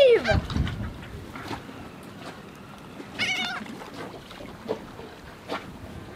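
A flock of gulls calling as they wheel over the water after thrown food, with a few short harsh calls: one at the start and a clearer one about three seconds in.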